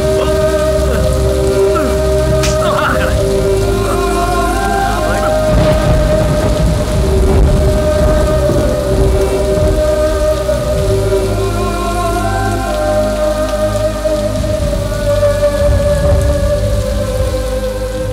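Heavy rain falling steadily, mixed under a slow film score of long held notes.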